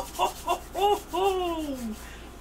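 A man laughing and whooping with excitement: a quick run of short high-pitched bursts, then one long cry that falls in pitch.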